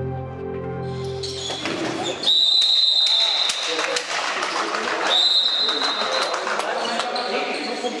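Handball referee's whistle: one long blast about two seconds in, then a shorter blast about five seconds in, stopping play for a foul. Voices and a few knocks of the ball come from the sports hall behind it.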